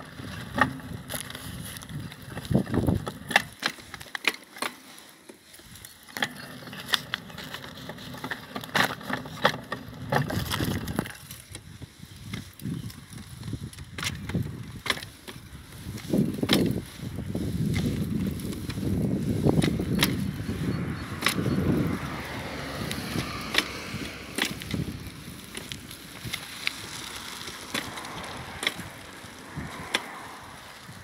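Handling noise from a phone camera being carried outdoors: irregular clicks and knocks throughout, with a stretch of low rumbling in the middle.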